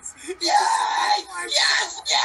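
A person screaming loudly in excitement: one long scream, then a second, shorter one.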